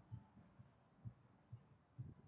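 Near silence, with faint, regular low thumps about twice a second.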